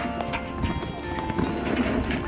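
Background music with the hoof steps of blanketed horses walking past on packed snow, a series of irregular knocks.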